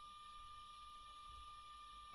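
Near silence: room tone, with only a faint steady background hum.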